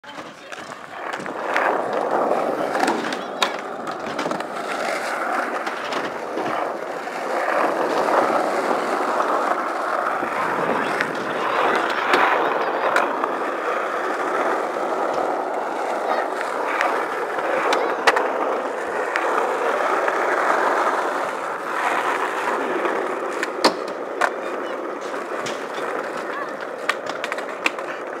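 Skateboard rolling on rough asphalt: a steady wheel roar broken by sharp clacks of the board popping and landing, with scraping as it slides and grinds on box edges through a frontside lipslide, a backside five-o, a frontside 180 and a fakie switch five-o revert.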